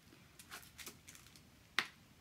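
Paintbrush dabbing shaving-cream paint onto aluminium foil: a series of light taps, with one sharper tap near the end.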